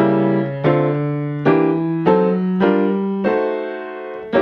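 Acoustic grand piano playing a slow series of six chords, each struck and held ringing, voiced in drop-2 style (second note from the top dropped an octave) to harmonize a rising melody line.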